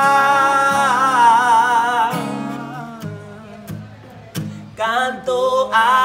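Two male voices singing a held, wavering note over a strummed acoustic guitar; about two seconds in the voices drop away and the guitar carries on alone, more quietly, before the singing comes back near the end.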